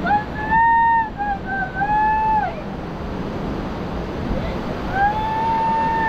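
A young child's high voice calling out three times in long, drawn-out calls, each rising and then falling in pitch, over a steady rushing noise.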